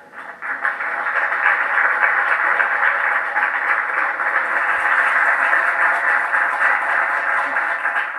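Audience applauding steadily, rising just after the last line of a reading.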